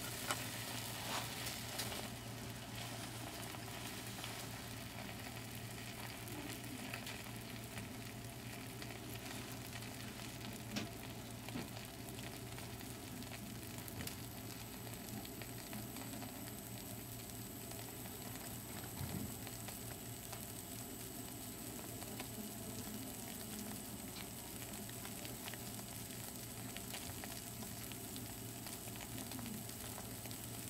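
Foaming cleaning product in a glass beaker fizzing steadily and faintly as its bubbles rise and pop while it reacts with the test liquid.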